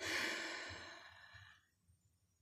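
A woman's sigh: one breathy exhale that starts suddenly and fades away over about a second and a half.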